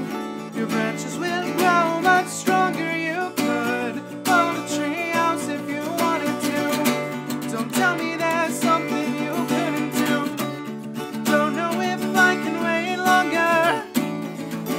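A man singing a slow song over his own strummed acoustic guitar.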